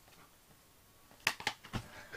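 Handling noise in a quiet room: about a second and a quarter in come two sharp clicks a fifth of a second apart, then a dull thump.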